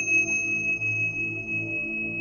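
A high meditation bell tone, struck just before, rings on steadily over soft, low ambient meditation music.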